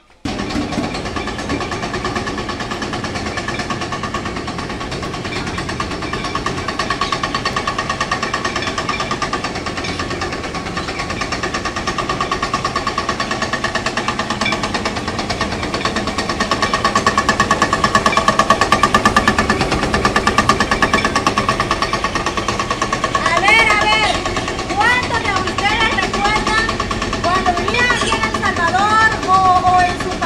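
Electric corn mill running steadily as it grinds fresh corn into masa: a steady hum with a fast, even rattle that comes on abruptly just at the start.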